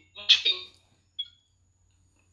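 A man's voice over a phone video call, breaking off after half a second, then a single brief high beep about a second in and a gap where the call audio drops out, on a poor connection.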